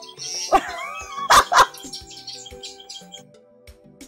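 A woman laughs and says "okay" over soft background music, with two short, loud bursts of laughter about a second and a half in. The music carries on more quietly afterwards.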